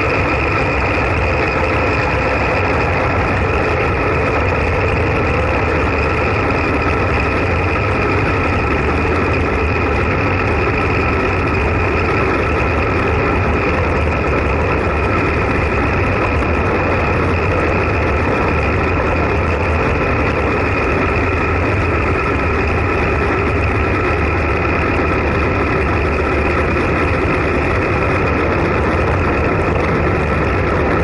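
Steady wind rush over an action camera's microphone with tyre and road noise from a road bike riding at about 40–50 km/h, an even, unbroken rumble with a faint steady whine above it.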